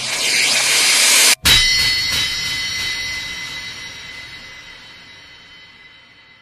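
A rising rush of noise cuts off into a split second of silence. A sharp crash follows, leaving a metallic ringing that fades away slowly over several seconds: a whoosh-and-clang effect in a break of an electronic pop song.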